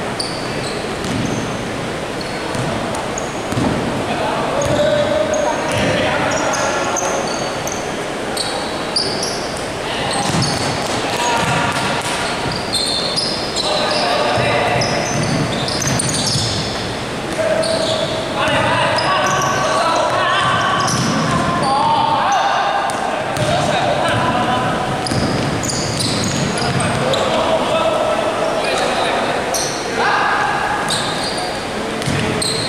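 Basketball game on an indoor wooden court: a basketball bouncing, sneakers squeaking, and players calling out, all echoing in a large sports hall.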